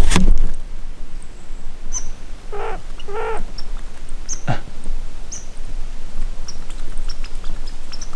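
A dog giving two short whining cries about two and a half seconds in, up at a red squirrel in a tree, with scattered faint high chirps around it. A loud rustling bump at the very start.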